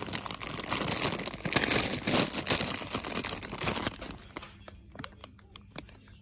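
Plastic cookie bag crinkling as it is handled and turned over in the hand, dense for about four seconds, then a few scattered crackles.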